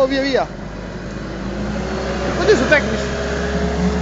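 A man's voice chanting the end of "un muro" in the first half-second, then a short voiced call about two and a half seconds in, over a steady low hum of outdoor background noise.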